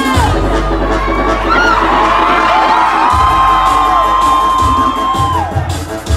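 Nightclub crowd screaming and cheering over loud club music with deep bass thumps; one long high-pitched scream rises, holds for about three seconds and falls away near the end.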